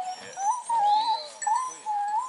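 Rabbit-hunting dogs whining, about four short high calls in a row, each rising and falling in pitch.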